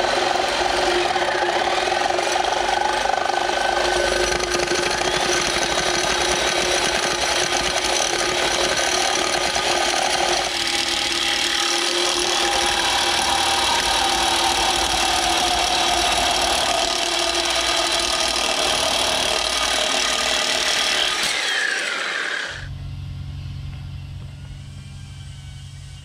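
Corded reciprocating saw cutting through the aluminium tabs on a 4L80E transmission's bell housing, running steadily for about twenty seconds. It winds down with a falling whine, leaving a quieter low hum.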